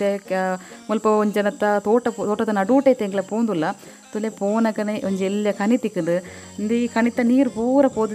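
A person's voice talking almost without a break, with short pauses about four and about six seconds in.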